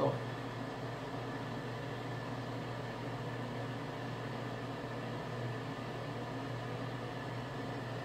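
Steady low hum with an even hiss, as of a fan or appliance running in a small room, with no change from start to end.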